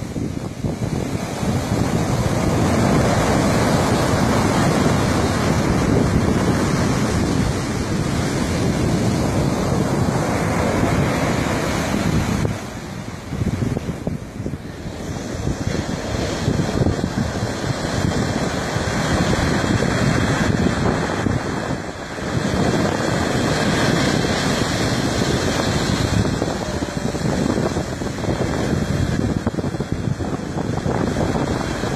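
Surf breaking and washing up a sandy beach, with wind buffeting the microphone; the noise of the waves eases briefly twice, near the middle and about two-thirds through.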